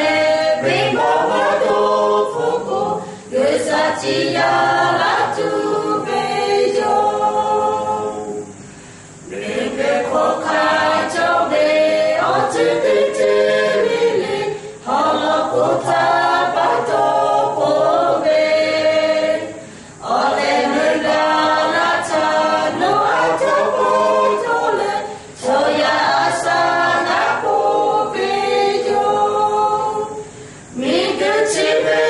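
Small mixed group of men's and women's voices singing a hymn unaccompanied, in phrases with short pauses for breath between them.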